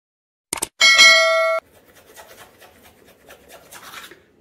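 Subscribe-button animation sound effect: two quick clicks, then a bright bell ding that lasts under a second and cuts off abruptly. After it comes faint, scratchy toothbrush scrubbing.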